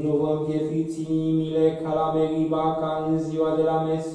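A single male voice chanting liturgical text on a nearly level reciting note, the syllables running on without pauses.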